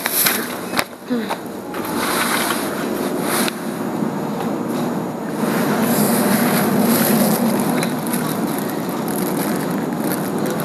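Plastic produce bags rustling close to the microphone as they are handled and put into a plastic shopping basket, with a few sharp clicks and knocks in the first second.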